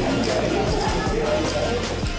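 Poker chips clicking against each other and the felt in a few sharp clacks as a hand handles them at the table, with voices of table chatter underneath.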